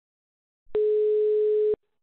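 A single telephone line tone on a recorded phone call: one steady beep about a second long that starts and stops sharply. It is the disconnect tone that signals the call has ended.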